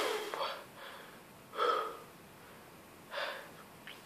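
A person's heavy breathing in three short gasps, each about a second and a half apart, as he recovers from a mouthful of ground cinnamon.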